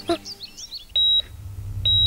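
Electronic beeping: short, steady high-pitched beeps, the first about a second in and the next just under a second later, over a low hum that swells up beneath them. Faint chirps come before the first beep.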